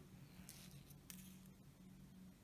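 Near silence: a faint steady hum, with two soft rustles about half a second and a second in as fingers wrap coated braid around a hook shank.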